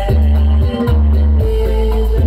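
Loud music played through a large stacked 'horeg' sound system, dominated by heavy bass notes held about half a second each, with a plucked-string melody above.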